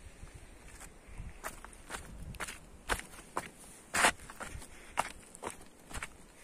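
Footsteps on dry grass and stony ground, about two steps a second, with one louder step about four seconds in.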